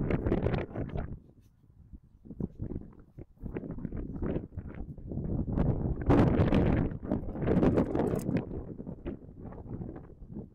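Wind buffeting the camera microphone in uneven gusts, a rumbling noise that swells and fades and is strongest a little past the middle.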